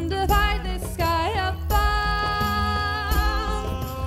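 A woman singing a song over instrumental backing with a steady bass; a long, steady note is held through the middle.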